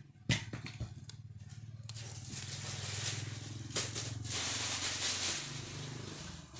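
Electric vehicle drive motor running on a test bench with a steady low hum. There is a click about a third of a second in, and a hiss swells from about two seconds in, then eases near the end.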